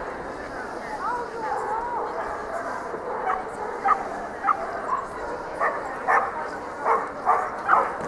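A dog barking in short, sharp yaps, about ten at irregular intervals starting about three seconds in, over a faint murmur of distant voices.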